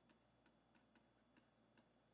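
Near silence with a few faint, irregular light taps, typical of a stylus on a pen tablet while numbers are hand-written.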